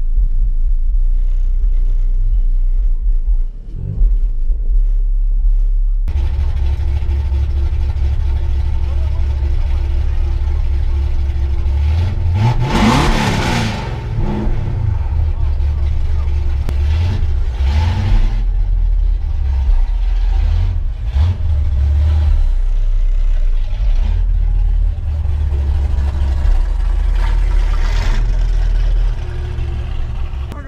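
Car engine idling with a steady low rumble, heard from inside a parked car's cabin. About thirteen seconds in, an engine is revved once, its pitch rising and falling back within a couple of seconds.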